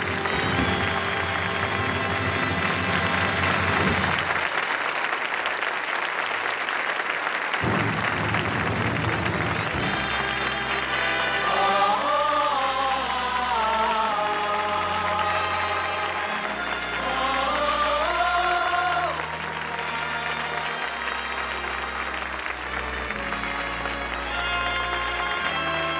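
Studio audience applauding while the band plays. About ten seconds in the applause gives way to the studio orchestra playing a melody with long held, sliding notes.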